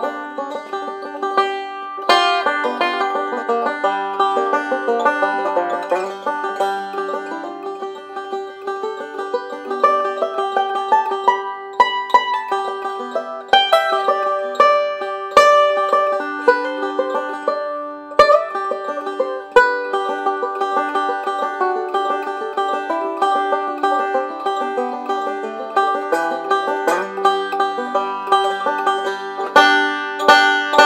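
1927 Gibson TB-3 raised-head banjo, converted to five-string with a Wyatt Fawley neck, played fingerstyle with picks in a steady, unbroken stream of plucked notes.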